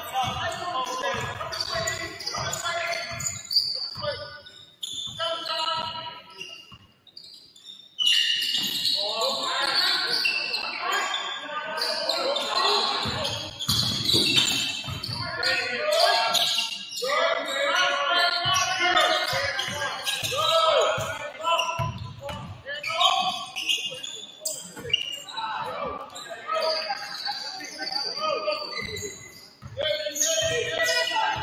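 Basketball bouncing on a hardwood gym floor during play, mixed with many voices of players and spectators calling out. The voices get suddenly louder about eight seconds in.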